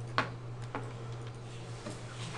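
Three sharp clicks, the first and loudest about a quarter second in, from the pointer selecting handwriting on a computer screen, over a steady low hum.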